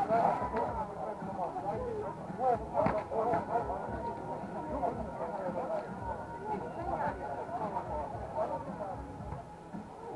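A group of people talking indistinctly, several voices overlapping, with one sharp knock about three seconds in.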